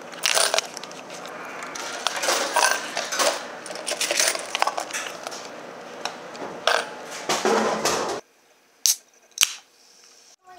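Clattering and rustling at a soda vending machine, with coins dropping into it, in irregular bursts. The noise cuts off suddenly about eight seconds in, followed by two sharp clicks about half a second apart.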